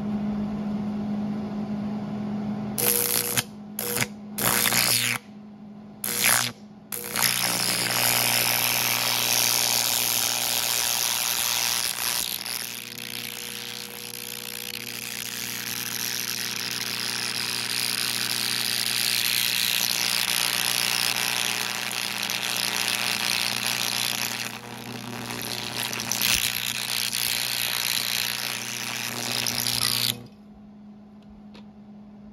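Twin carbon arc torch: a few short sputtering strikes as the carbon rods are touched together to start the arc, then a steady hissing, crackling arc for over twenty seconds as it heats a piece of thin sheet metal, cutting off abruptly at the very end. A steady low hum runs underneath throughout.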